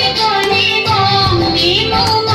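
Music: young girls' voices singing a melody together over instrumental accompaniment.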